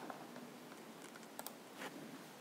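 Quiet room tone with a few faint clicks, two of them in quick succession about one and a half seconds in.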